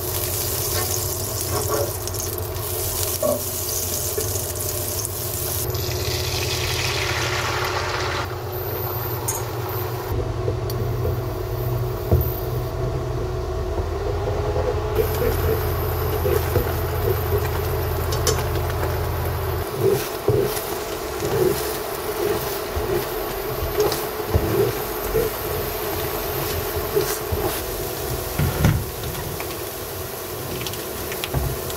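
Butter and then beaten eggs cooking in a nonstick frying pan, with a spatula stirring and scraping the eggs into curds. A steady low hum runs under it until about two thirds of the way through, then irregular clicks and taps from the spatula against the pan.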